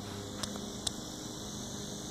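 Steady low background hum, with two faint clicks in the first second.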